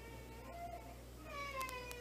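Faint whining tones from the sound system, several thin pitches sliding slowly down over a steady low electrical hum.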